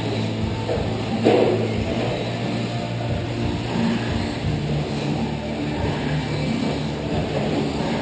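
Radio-controlled short course trucks racing on an indoor clay track: their motors whine as they accelerate and their tyres scrub the dirt, with a louder burst about a second in.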